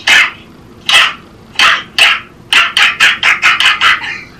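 A dog barking: a few separate barks, then a quick run of barks in the last second and a half.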